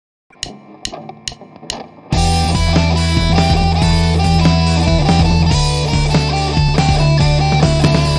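Four evenly spaced clicks, about half a second apart, count in. About two seconds in, a DigiTech Trio+ backing of drums and bass starts, with an electric guitar solo played over it.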